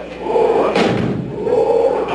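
Death metal band playing live through a club PA, loud and distorted, with one heavy hit a little under a second in.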